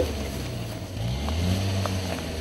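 Combine harvester engine running steadily in the distance as a low hum, its pitch shifting slightly about a second in.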